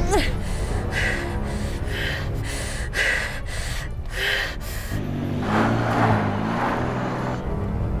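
A woman gasping in pain, short sharp breaths about once a second, then a longer strained breathy moan, over a low, dark film score.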